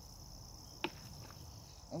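Faint steady chirring of crickets, with a single sharp click a little under a second in.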